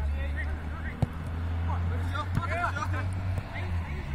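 Players' shouts and calls across a football pitch over a steady low rumble, with one sharp thud of a football being kicked about a second in.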